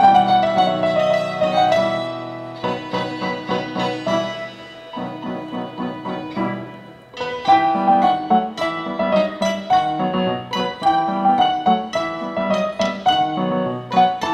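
A small live instrumental ensemble of santur, flute, violin and keyboard playing a Persian piece, with quick, repeated struck notes. The music thins and softens between about five and seven seconds in, then the quick notes come back at full strength.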